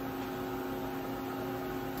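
Steady machinery hum with several steady tones held at an even level.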